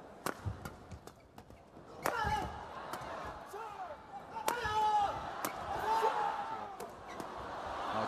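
Badminton rally: a series of sharp racket hits on the shuttlecock at an irregular pace, with voices from the arena crowd rising from about two seconds in and becoming the loudest sound.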